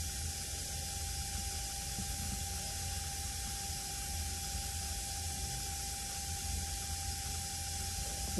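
Steady background hiss with a low hum and a thin, faint steady tone, with no distinct sound event.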